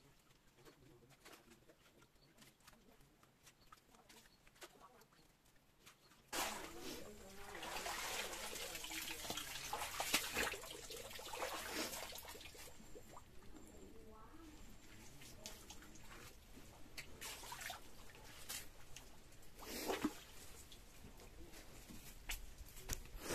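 Water splashing and trickling with clicks and knocks as a mesh shrimp trap is handled in a shallow muddy canal; very faint at first, then suddenly louder about six seconds in.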